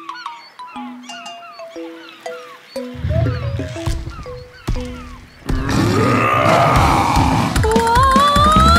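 Cartoon song intro music: a melody of short, bright stepping notes, joined by a bass line about three seconds in. About five and a half seconds in, a loud, drawn-out dinosaur roar sound effect swells over the music.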